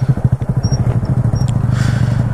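Honda Grom motorcycles idling close by: the 125 cc single-cylinder engine's steady, choppy low pulsing.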